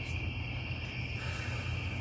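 Crickets chirping in a steady, high-pitched continuous chorus, with a low steady hum underneath.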